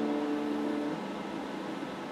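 The last notes of a strummed electric guitar chord dying away, fading out about halfway through and leaving a steady hiss.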